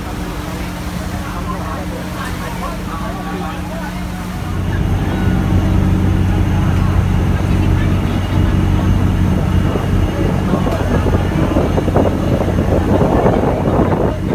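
Boat engine droning steadily, with water and wind noise and voices chattering over it. The drone gets louder about four and a half seconds in.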